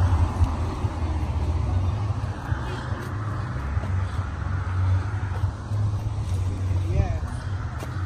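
Wind buffeting the phone's microphone in an uneven low rumble, mixed with road traffic on the bridge; faint voices come through about seven seconds in.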